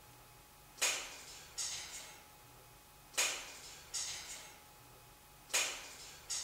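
A stone striking a stone wall and then landing on the floor: two sharp knocks less than a second apart, with a short ring-off in an echoing stone cell. It sounds as though the stone was thrown against the wall. The pair of knocks comes round three times.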